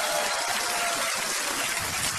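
A steady rushing, hissing noise like gushing water, with no beat or voice in it.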